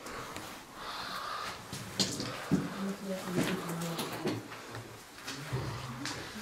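Quiet, low voices murmuring in a small, bare room, with a few sharp clicks or knocks about two to three and a half seconds in.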